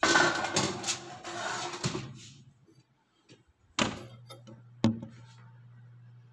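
Metal baking tray pushed into an oven, a scraping clatter for about two seconds. Then two knocks about a second apart as the oven door is shut, and the convection fan starts a steady low hum.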